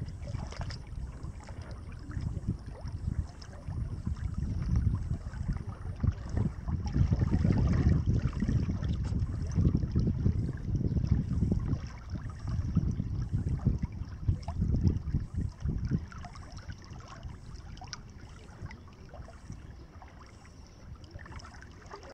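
Wind buffeting the microphone in uneven gusts, a low rumble that is strongest through the middle and dies down for the last several seconds.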